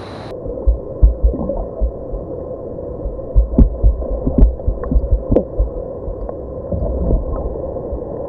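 Action camera plunged under river water: the sound turns muffled a moment in, leaving a low rumble and hum with irregular dull thumps of water moving against the camera housing.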